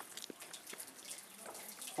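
Faint, steady running water from a village drinking fountain (çeşme).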